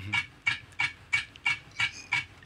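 Ticking of a timer: short, sharp ticks at a perfectly even pace of about three a second.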